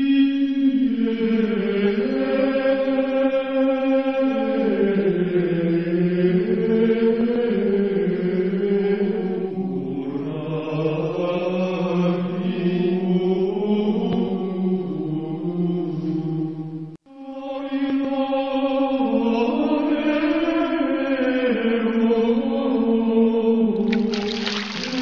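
Film-score vocal music: a slow chant sung in long held notes that move step by step, with a brief break about 17 seconds in.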